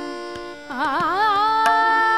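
Female Hindustani khayal vocalist singing Raag Shankara over harmonium, tanpura drone and sparse tabla strokes. After a brief dip, her voice re-enters about two-thirds of a second in with a wavering, ornamented glide upward that settles into a long held note.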